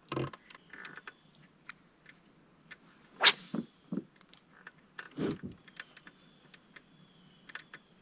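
Scattered small clicks and knocks of fishing tackle being handled in a plastic kayak, with one louder sharp knock about three seconds in and a few softer thuds after it.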